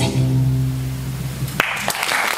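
Chamber string orchestra ending the piece on a low held note, which stops about a second and a half in. Clapping breaks out just after, as applause begins.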